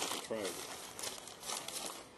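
Sheets of paper rustling and crinkling as they are handled, a steady run of small crackles, with a brief voice sound shortly after the start.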